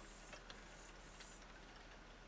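Near silence: room tone with a few faint, irregular ticks.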